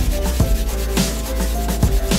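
Sandpaper on a hand sanding block rubbing back and forth along the bevelled edge of a plywood piece, mixed with background music that has held notes, a bass line and a steady beat.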